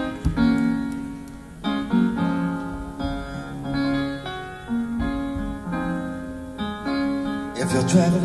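Piano playing a slow introduction of struck chords and single notes, each ringing and fading, with low bass notes beneath, in a live concert recording.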